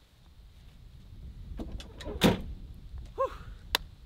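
A pickup truck's tailgate slammed shut about two seconds in, the loudest sound, followed by a short squeak and a sharp click near the end.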